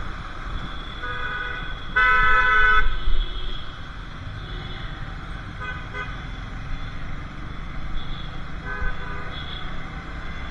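Vehicle horns honking in traffic: a short honk about a second in, then a louder, longer one lasting nearly a second, with fainter short honks around six and nine seconds. Under them runs the steady low rumble of the motorcycle ride on a helmet-mounted camera.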